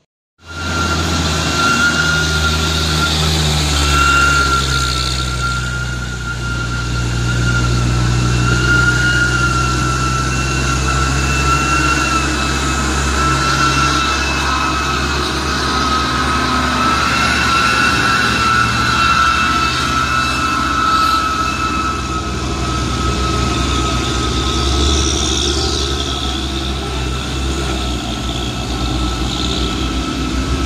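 Heavy truck diesel engine running slowly, low and steady, with a steady high whine over it; it cuts in suddenly about half a second in.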